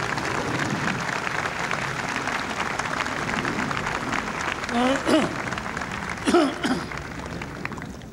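A large crowd applauding, with two short voice calls about five and six seconds in; the applause thins out near the end.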